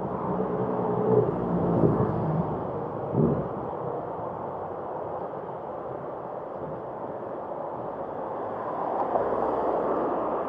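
Steady rumble of wind and road noise from a bicycle riding along a city street, with a passing motor vehicle's engine heard over the first two or three seconds and a few short bumps.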